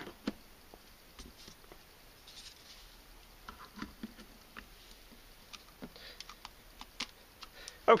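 Scattered light clicks and taps of plastic NP-F camera batteries being set down and seated onto the contacts of a four-bay desktop charger, with one sharper click about seven seconds in.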